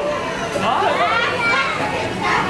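Overlapping, excited chatter of diners, children's voices among them, with no single speaker standing out.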